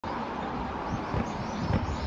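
Outdoor city ambience: small birds chirping over and over above a steady low rumble of distant traffic.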